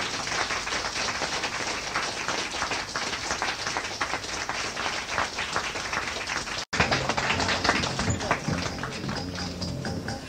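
Audience applauding after a song ends. About two-thirds of the way through, the sound drops out for an instant, and then a low, evenly repeating bass pattern of the next song starts under the clapping.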